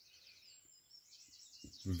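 Quiet room tone with faint, thin, high-pitched chirps in the middle; a man's voice starts just before the end.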